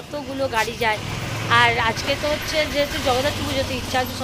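A woman talking, with a low steady vehicle engine hum coming in about a second in and running under her voice.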